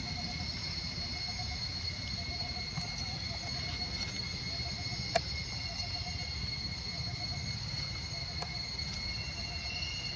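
Forest insects droning steadily at a high pitch, with a lower pulsing trill that repeats about once a second. Under it runs a low rumble, and there is a single sharp click about five seconds in.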